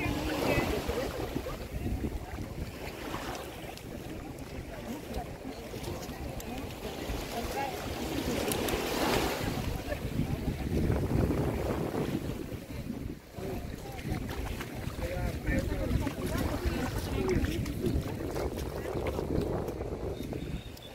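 Wind buffeting the microphone over small waves lapping at a sandy shore, with scattered voices of people chatting nearby.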